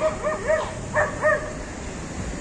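Small dog barking: about five short, high-pitched barks within a second and a half.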